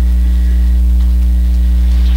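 Steady low electrical hum with a few higher steady overtones, loud and unchanging, carried in the microphone and sound-system chain.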